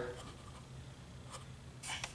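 Quiet shop room tone: a faint low steady hum with a few soft scuffs and clicks.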